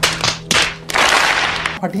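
Cardboard shipping box being ripped open by hand: a couple of sharp rips, then a longer tearing noise lasting about a second.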